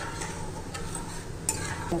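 Spatula stirring hot oil in a kadai, the oil sizzling lightly, with a few sharp clicks of the spatula against the pan.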